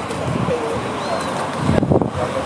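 Outdoor ambience with wind buffeting the microphone and a bird calling, with a stronger gust near the end.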